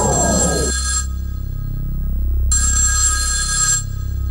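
A telephone ringing twice, each ring about a second long with a pause between, over a low sustained synth drone in the opening of a dance track. The tail of a booming hit fades out in the first second.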